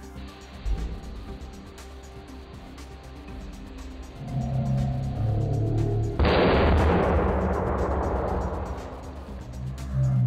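Background music with steady held tones comes in about four seconds in. About six seconds in, Neverwet-coated sodium metal explodes on reaching the water: a sudden, loud burst of noise that fades away over about three seconds.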